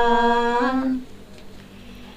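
A woman singing a Dao folk song (páo dung), holding one long steady note that lifts slightly in pitch and breaks off about a second in, followed by a pause.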